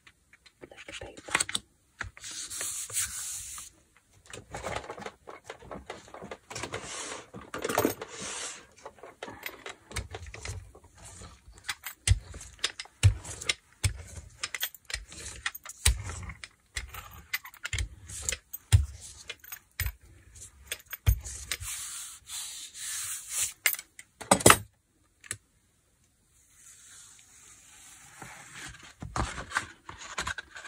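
Paper being pressed and rubbed down onto a gel printing plate by hand and with a clear hand roller: irregular rustling and rubbing with soft knocks against the table, and a sharp click about two-thirds of the way in. Near the end a softer rustle as the print is lifted off the plate.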